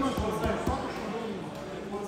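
About four dull thumps in the first second, from grappling bodies shifting and pressing on a padded wrestling mat, with voices in the hall behind.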